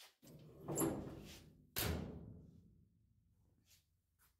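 Two heavy thuds about a second apart, the second with a sharper start, each dying away over about a second.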